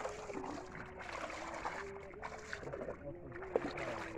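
Water sloshing and dripping as a long collapsible ring-net fish trap is hauled hand over hand out of shallow water by a wading man, with small rattles of the net and one sharp knock about three and a half seconds in. A faint steady hum that wavers in pitch runs underneath.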